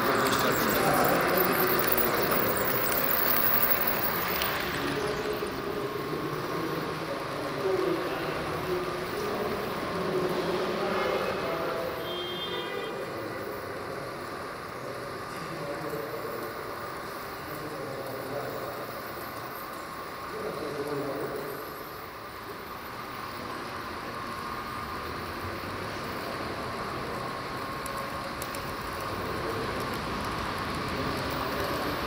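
H0-scale model train rolling along its track, loudest at the start as the coaches pass close, against a background of people talking in the exhibition hall. About twelve seconds in there is a short high-pitched toot.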